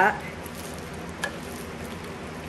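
A metal spoon stirring raw chicken pieces in sauce in a plastic-lined slow cooker: a steady, soft wet mixing noise with a light click of the spoon a little past halfway.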